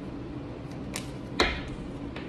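Tarot cards being handled and drawn, with a faint click about a second in and a sharp card snap about a second and a half in.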